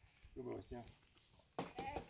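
Faint speech: a few short spoken syllables.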